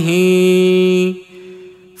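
A man's voice chanting the Arabic Gospel reading in the Coptic liturgical tone, holding one steady note for about a second, then falling away to a faint trailing tone.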